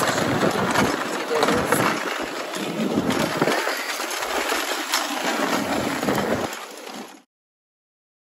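Steady rushing noise of wind and snow while being towed downhill in a ski-patrol rescue toboggan, with scattered clicks and knocks. It cuts off abruptly about seven seconds in.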